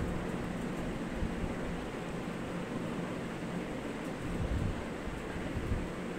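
Wind buffeting the microphone: a steady hiss with uneven low rumbles that swell slightly a little past the middle.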